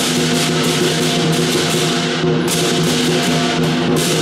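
Lion dance percussion: a large Chinese lion drum beating with cymbals clashing in fast, steady strokes over a sustained ringing tone. The cymbals break off briefly a little past the middle, then resume.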